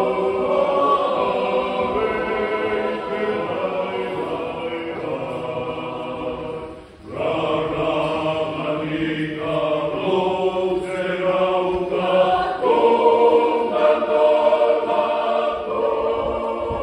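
Church choir of men's and women's voices singing together, unaccompanied, with held chords. About seven seconds in the sound drops off briefly at a break between phrases, then the full choir comes back in and grows louder toward the end.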